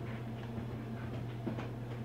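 A steady low hum, with a few faint, light rustles and taps from rabbits shifting in the straw bedding of a wire crate.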